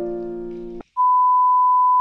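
Piano background music that stops abruptly a little under a second in, followed by a steady electronic beep at one pitch, about a second long, that cuts off suddenly.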